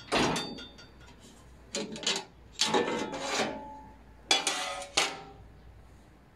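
Metal parts of an old table saw being handled: clanks and scrapes as the orange blade cover is taken off around the blade and set down on the table top. The sound comes in four short bouts, the first with a brief ringing.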